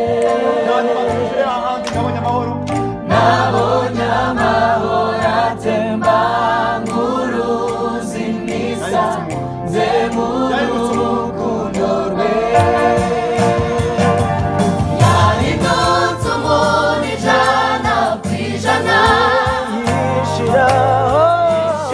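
Gospel choir singing in harmony, the voices gliding and wavering in pitch, over sustained low chords on an electronic keyboard.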